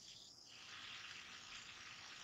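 Near silence: a faint steady hiss that sets in about half a second in.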